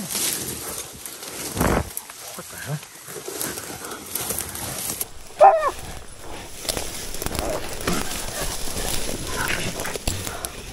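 Leaves and branches rustling and snapping as someone pushes through thick brush, with one loud animal cry about five seconds in.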